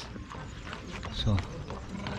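Horse hooves clip-clopping on paving as a horse-drawn carriage passes.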